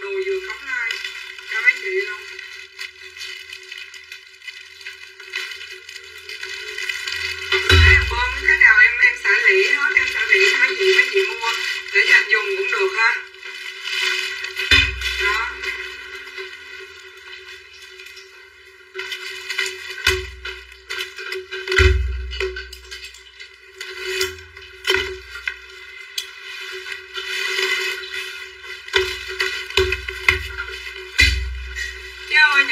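A parcel being unpacked by hand: plastic wrapping rustling and crackling and packing tape being torn, with several dull thumps as a cardboard box is moved and set down. A voice and music run underneath.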